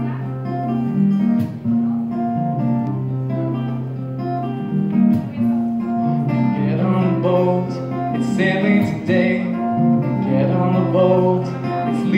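Acoustic guitar strumming the instrumental intro of a song, chords ringing over held low notes.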